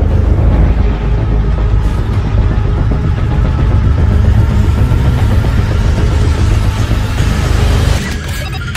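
Loud, steady, deep rumble from the intro of a wrestler's entrance-video soundtrack, an engine-like drone with no clear beat.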